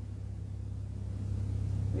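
A low, steady hum or rumble, growing a little louder toward the end.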